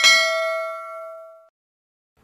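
Notification-bell ding sound effect: a single bright chime that rings and fades out over about a second and a half.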